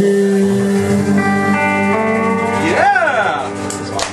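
The last chord of the song ringing out on acoustic and electric guitars, held and slowly fading. About three seconds in, a brief whoop rises and falls in pitch over it.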